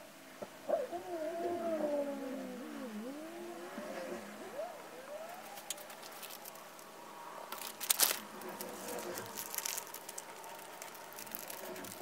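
A few seconds of squeaky, wavering gliding tones, then crackling and crinkling of a clear plastic zip bag being handled, with a few sharp crackles about two thirds of the way in.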